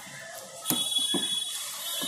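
Rubber air-intake hose being pushed and fitted onto a scooter's air filter housing by hand, with a sharp click about a third of the way in and a few light knocks. A steady high-pitched tone starts with the click and holds to the end.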